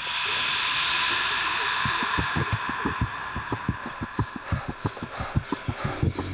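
Dramatic suspense sound design in a TV drama score: a high hissing tone comes in suddenly and fades about four seconds in, while a run of short, low, heartbeat-style thumps starts about two seconds in and gets faster.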